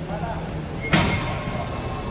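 A sudden single knock or thump about a second in, ringing out and fading over the following second, over a steady low hum.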